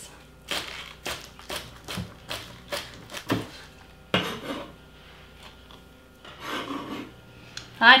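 Chef's knife chopping green onion leaves on a plastic cutting board: a quick run of sharp chops, about three a second, for the first few seconds. Then a few longer, softer scraping sounds as the chopped onion is scraped off the board.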